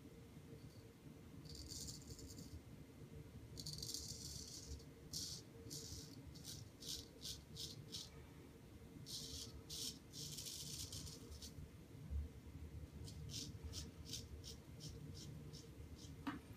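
Straight razor scraping through three days of stubble in a series of short, faint, raspy strokes, some longer and some quick in groups. The blade tugs a tiny bit but cuts.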